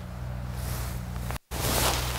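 Steady outdoor background noise: a low, even hum with a light hiss. It cuts out for a moment about one and a half seconds in and comes back a little louder.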